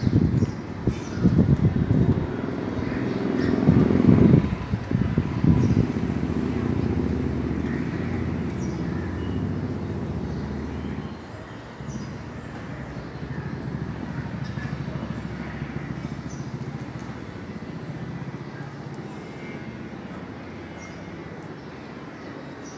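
Outdoor urban background noise: a steady low rumble, louder and gusting in the first six seconds and dropping about eleven seconds in.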